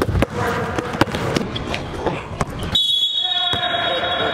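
A basketball bouncing on a gym floor, a few sharp knocks over the first couple of seconds, with voices in the background. Near the three-second mark the sound changes abruptly to a steady high-pitched tone that holds to the end.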